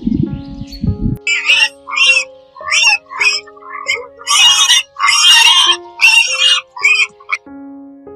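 Domestic pigs squealing, a string of short, shrill cries, several a second with the longest and loudest in the middle, over background music with held notes. A low rumble fills the first second before the squealing starts.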